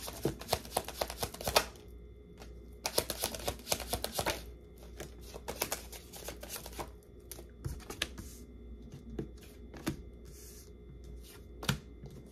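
A tarot deck being shuffled by hand: three bursts of rapid card flicking in the first seven seconds, then scattered single clicks as the cards are handled.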